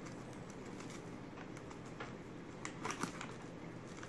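Spoon scooping flaxseed: a few faint, scattered small clicks and light handling noise over quiet room tone, the clearest just before three seconds in.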